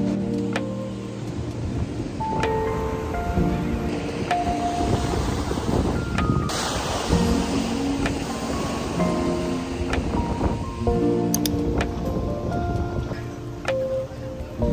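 Soft background music of gently held melodic notes, over a steady rush of wind and surf.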